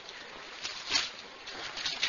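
Faint rustle of paper Bible pages being turned, with a few short swishes as the pages flip.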